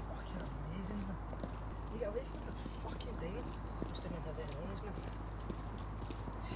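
Indistinct voices talking at a distance over a steady low hum, with faint footsteps on pavement.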